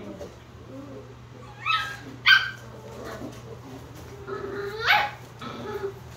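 Australian Shepherd puppies yipping: two short high yips about two seconds in, then a longer call near the end that starts low and rises sharply in pitch.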